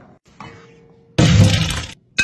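Pot of boiling water with diced potatoes poured out into a colander to drain: a sudden loud rush and splash of water starting a little past a second in, lasting well under a second and cutting off abruptly.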